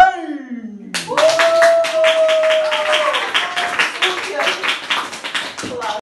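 A man's unaccompanied singing ends with a last sung note sliding down in pitch. From about a second in, a small audience claps steadily, with voices calling out over the applause.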